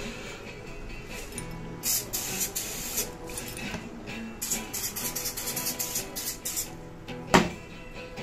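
Aerosol can of wax spraying onto a wooden rifle stock in a series of short hisses from about two seconds in until nearly seven, over soft background guitar music. A single sharp knock near the end.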